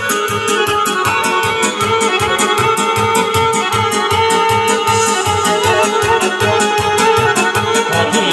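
A band plays instrumental Balkan folk dance music: a sustained keyboard or accordion melody over a steady, fast, even beat.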